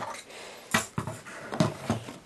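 Handling noise from a small plastic quadcopter turned over in the hand: a few short clicks and knocks of fingers and frame, wires and propellers.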